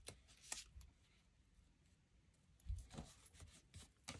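Near silence broken by a few faint paper rustles and light clicks as a sticker is peeled from a paper sticker sheet and handled: a couple at the start, a quiet stretch, then a few more in the last second and a half.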